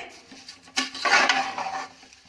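A metal spatula stirring and scraping rice and peas as they roast in ghee in a pressure cooker. The scraping is soft at first and louder for about a second in the middle.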